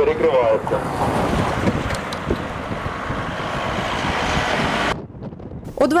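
Steady rush of outdoor wind buffeting the microphone over road traffic noise, with voices briefly at the start; it drops off about five seconds in.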